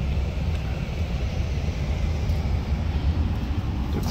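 Steady low rumble inside the cab of a 2019 Ford F-150 with a 2.7-litre EcoBoost engine idling, with the hiss of the climate fan blowing.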